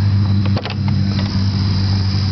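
A steady low hum, with a few short clicks just after half a second in.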